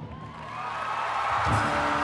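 Drum and bugle corps brass swelling into a loud held chord, with a drum hit about one and a half seconds in.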